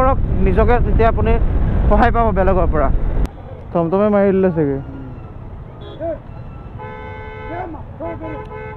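A man talking over the rumble of a moving motorcycle and wind, cut off abruptly about three seconds in. After a brief voice in street noise, a vehicle horn sounds steadily from near the end.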